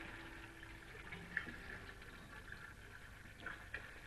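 Faint background hiss in a pause between lines of dialogue, with a few soft, faint ticks.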